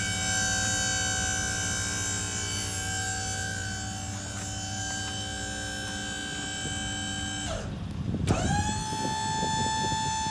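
Electric-hydraulic pump of a B-Wise dump trailer running with a steady whine, driving the dump bed's cylinder. It stops about seven and a half seconds in, then spins up again a moment later at a lower pitch, as the bed is powered the other way (power up, power down).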